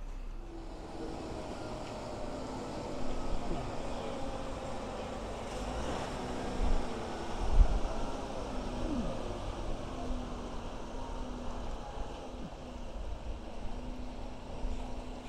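Heavy-haulage lorry running slowly past while hauling a steam locomotive on a low-loader trailer: a steady diesel engine drone whose pitch drifts a little, with a couple of low thumps around the middle.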